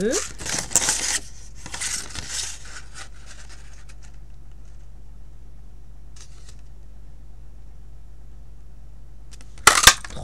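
Card stock rustling and sliding as it is handled and fitted into a handheld flower-shaped craft paper punch. Near the end comes a sharp clack as the punch is pressed down through the card.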